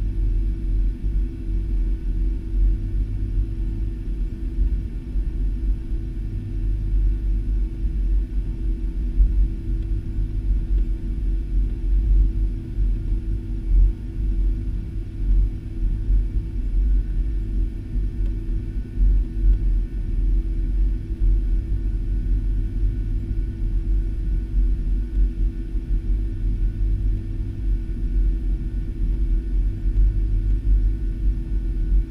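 Steady low rumble inside the cabin of a Boeing 757 taxiing on the ground, its engines at low power, with a faint steady hum running through it.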